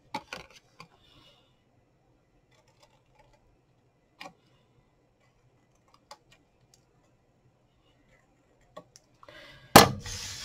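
Scissors snipping black card stock: a few short, sharp snips a second or two apart. Near the end comes one much louder clack as the scissors are set down on the cutting mat, with brief rustling around it.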